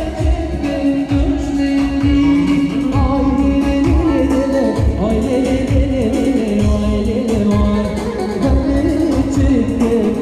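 Live Kurdish music: a male singer sings a long, ornamented melody through a microphone over a long-necked lute and an electronic keyboard with a steady drum beat.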